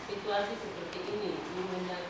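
Indistinct speech in a room, a voice talking too unclearly to make out.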